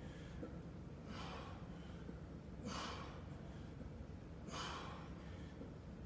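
A man's heavy breathing from hard exertion during weighted squats: three sharp, noisy breaths, one about every second and a half to two seconds, in time with the reps. A steady low hum runs underneath.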